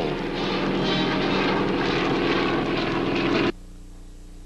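Engine and rotor noise of a large twin-engine military transport helicopter hovering, steady, on an old newsreel soundtrack. It cuts off abruptly about three and a half seconds in, leaving only a faint low hum.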